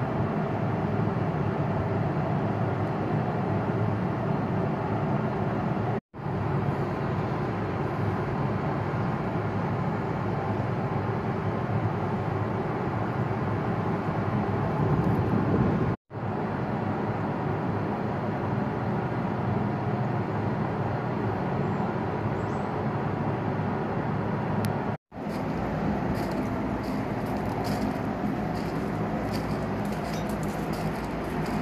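Steady rumbling vehicle noise, broken by three brief dropouts. In the last few seconds, faint high clicks and squeaks join it.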